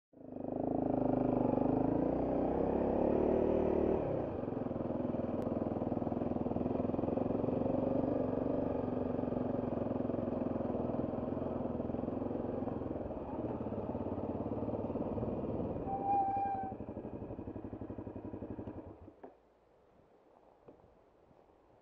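Trail motorcycle engine running as the bike rides along, with the most revs in the first four seconds and steadier, lower running after that. A brief squeal sounds about sixteen seconds in. The engine then drops to a slow, pulsing low-rev beat and stops about nineteen seconds in.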